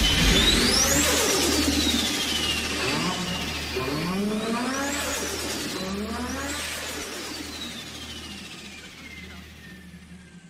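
Car engine revving in repeated rising sweeps, about every second or two, over a steady deep bass drone, all fading out gradually. This is the outro of a bass-boosted electronic remix.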